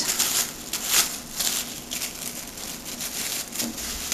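Thin plastic produce bag crinkling and rustling as hands open it out, an irregular run of crackles, a little louder about a second in.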